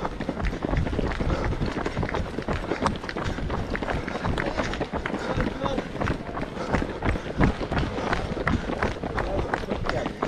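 Footsteps of several runners on a gravel path, a continuous run of quick footfalls.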